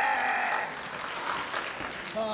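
A man's long, held shout that breaks off under a second in, followed by crowd noise and applause.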